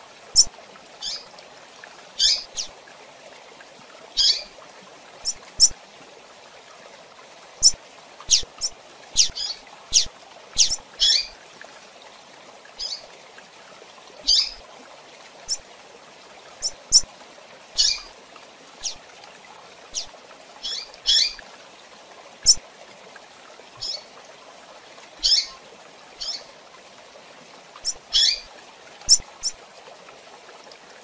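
Female double-collared seedeater (coleiro) giving short, sharp, high call notes, one at a time at uneven gaps of about half a second to two seconds, over a steady faint hiss.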